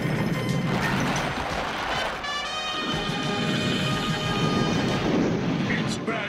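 Animated-battle sound effects: a continuous crashing, rumbling din mixed with a dramatic music score, whose held tones come in about two seconds in.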